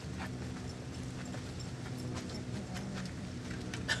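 Dry leaves, moss and twigs crackling and rustling in irregular small clicks as they are packed into a stick teepee as fire-starting tinder, over a steady low hum.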